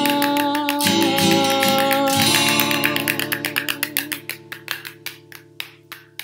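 A song ends on a held sung note over a sustained acoustic guitar chord. Then a homemade spin drum rattles: its beads strike the plastic lid in fast, even clicks that fade over the last few seconds while the chord rings on.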